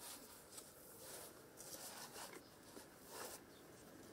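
Near silence: faint outdoor room tone with a few soft rustles.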